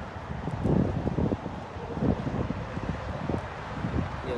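Wind buffeting the microphone: a low, gusting noise that swells about a second in and again around two seconds.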